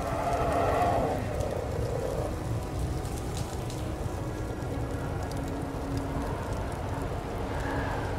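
Steady patter of rain, with a low held tone that comes and goes and a swell in the first two seconds.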